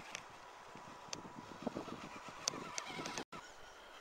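Small electric RC rock crawler driving over dirt and stones, with a faint steady whine and scattered clicks. A few short honk-like calls come in the middle. The sound drops out briefly near the end.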